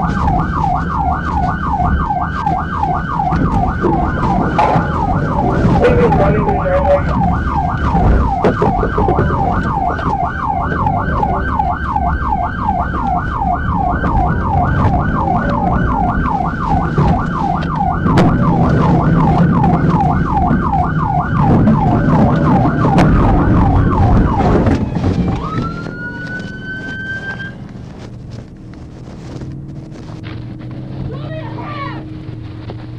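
Police cruiser siren in rapid yelp mode, about three sweeps a second, over engine and road noise during a pursuit. It cuts off about 25 seconds in as the cruiser stops, and a single short rising tone follows.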